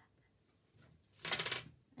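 A brief rattling clatter of small craft supplies being handled, a little over a second in, against quiet room tone.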